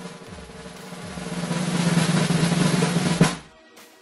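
Snare drum roll that swells in loudness over about two seconds, holds, then ends on a sharp accent and cuts off: a build-up drum roll.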